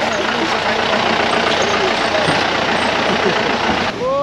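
A jeep driving over a rough road of loose rocks: a steady, dense noise of tyres crunching over stones with the engine running underneath. It stops abruptly just before the end.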